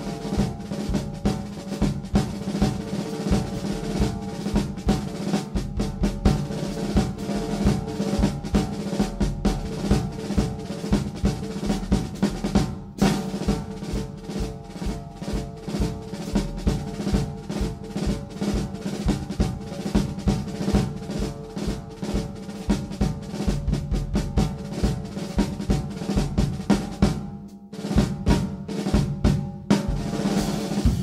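A DW drum kit played solo in a dense, continuous jazz drum solo on snare, bass drum and cymbals. There is a short break about thirteen seconds in and another near the end.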